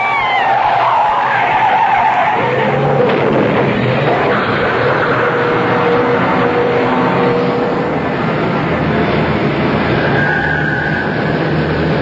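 Radio-drama sound effects of a car crash: tires squealing in a skid for the first couple of seconds as a car with failed brakes runs into a truck, then a long, steady noise of the wreck.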